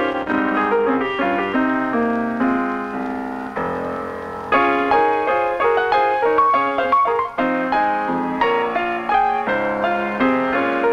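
Acoustic piano played in a slow, free-flowing ballad style: rolling chords and runs, with one chord held and left to fade a few seconds in before a louder new phrase begins.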